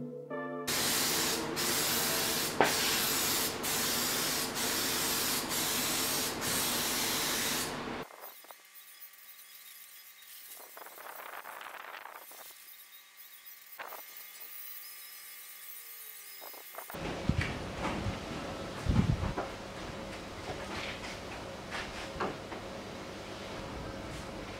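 Aerosol spray can of black paint hissing in passes, with short breaks about once a second, for the first eight seconds. After a much quieter stretch, scattered knocks and clatter begin about seventeen seconds in.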